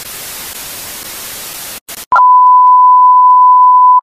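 Television static hiss for about two seconds. After a brief break it gives way to a loud, steady single-pitch test-tone beep, the kind that goes with TV colour bars, which cuts off abruptly at the end.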